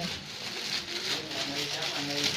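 Low voices talking in the background over a steady hiss.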